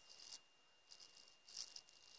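HSP RC car differential turned by hand, giving a few faint, short scratchy rattles. The owner puts the scratching down to parts he has not yet deburred.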